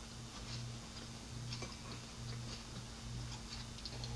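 Faint closed-mouth chewing of a piece of omelet, with a few soft mouth clicks, over a low hum that pulses a little more than once a second.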